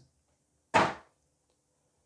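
A single short knock from the clear plastic packaging being handled, about three-quarters of a second in, dying away quickly; otherwise near silence.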